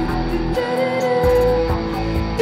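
Live rock band music: an electric guitar playing, with a woman's voice holding a sung note over it and a steady beat.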